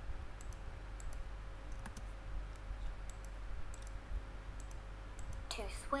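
Light, irregular clicks of text being entered on a computer, single and in quick pairs, as an answer is typed in. A woman's voice says 'to swim' near the end.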